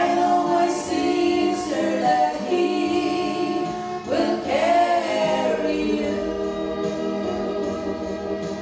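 A female vocal trio sings a slow gospel song in harmony through microphones, over a steady accompaniment of held chords. The voices swell into new phrases at the start and again about four seconds in.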